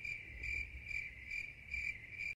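Cricket chirping, a steady high trill that swells about twice a second, used as the stock awkward-silence sound effect after a bad pun.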